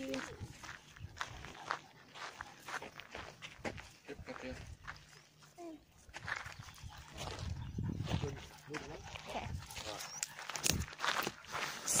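Footsteps crunching on a loose gravel and rock path, in irregular short crunches.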